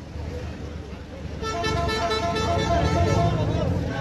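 A vehicle horn blown and held for about two seconds, starting about a second and a half in, over the low rumble of slow, jammed traffic.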